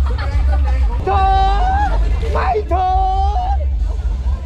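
Street crowd babble over loud music with a heavy low bass, a voice holding two long steady notes partway through.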